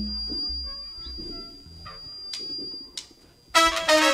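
A live band with trumpets. Soft low notes play for the first few seconds; then, about three and a half seconds in, the trumpets and band come in loudly together.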